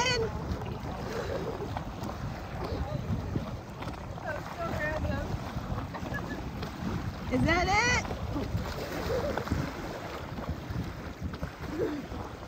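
Wind buffeting the microphone over small waves lapping at a sandy shoreline. About seven and a half seconds in there is one short call that rises in pitch.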